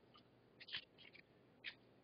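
Faint, short rustles and scrapes of paper as a sheet is moved and changed, a few of them about halfway through and one near the end.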